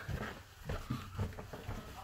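Footsteps climbing carpeted stairs: soft, dull thuds about two a second.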